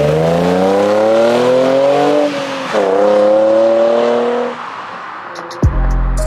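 Nissan 350Z's V6 engine accelerating hard, its pitch climbing, dropping briefly at an upshift, then climbing again before the car pulls away and the sound fades. Music with a deep bass hit comes in near the end.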